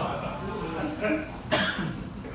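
A person's cough, one short, loud burst about one and a half seconds in, amid low talk.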